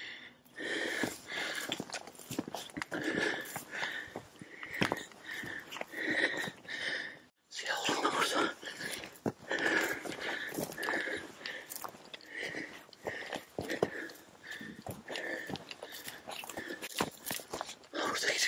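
Footsteps of a person walking quickly through dry grass and loose stones, crunching at a steady pace of a bit over one step a second, with breathing in between. The sound cuts out for a moment about seven seconds in.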